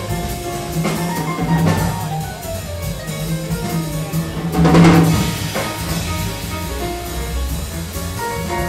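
Big band jazz in which the horns drop out and the drum kit carries the music over a held low note, with a loud cymbal crash about five seconds in before the band comes back in.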